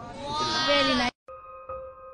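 A high, quavering voice holding one wobbling note, cut off sharply about a second in. Slow, soft electric piano notes follow.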